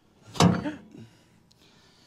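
A single heavy clunk about half a second in, with a short ring, as the yacht's rudder, eased off the car jack, drops a little and settles into its fittings.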